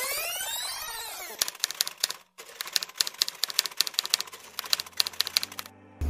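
A sweeping whoosh-type sound effect that falls away over the first second or so. It is followed by about four seconds of rapid typewriter key clacking, with a brief break about two seconds in, and the clacking stops just before the end.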